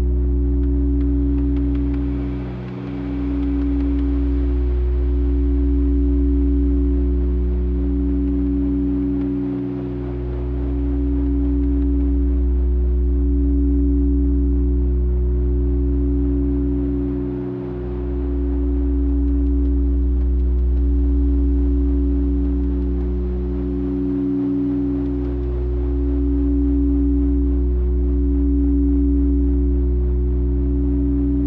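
Quartz crystal singing bowls sounding several sustained, overlapping tones, one of them pulsing slowly, over a deep steady drone from a modular synthesizer. The drone dips briefly about every seven seconds.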